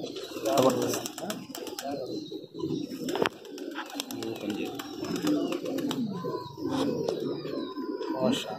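Domestic pigeons cooing, several birds overlapping in a continuous low murmur, with a few sharp clicks mixed in.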